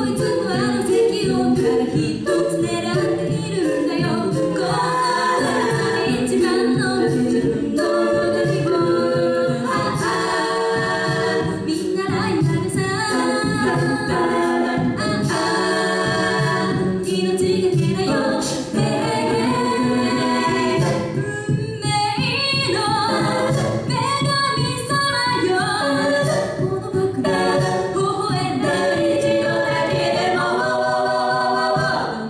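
A female a cappella group of six singing a pop song in close vocal harmony into microphones, over a steady vocal beat.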